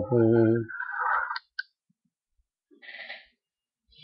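A man's low voice holding a sung note for under a second, trailing into a breathy hiss. Then a sharp click, and about three seconds in a faint short rustle.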